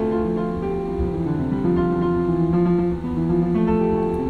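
Electronic keyboard played in a quick run of overlapping, ringing notes, keys pressed more or less at random.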